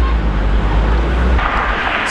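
Porsche 718 Cayman engine and road noise heard from inside the cabin at low speed, a steady low rumble. About one and a half seconds in it cuts off abruptly, giving way to an even outdoor hiss.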